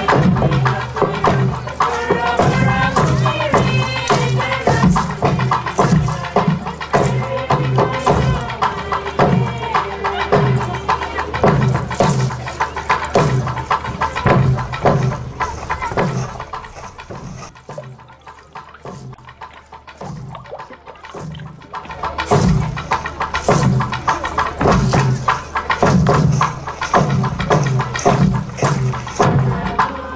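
Traditional Papua New Guinean song from Daru: men and women singing together over a steady drum beat. About seventeen seconds in it drops quieter for a few seconds, then the full singing and drumming come back.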